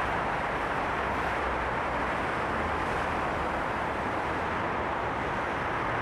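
Steady road traffic noise from a busy city road: a continuous wash of passing cars with a low rumble underneath.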